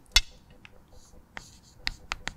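Chalk writing on a blackboard: a few sharp taps of the chalk, the loudest just after the start, with faint scratching between them as the letters are drawn.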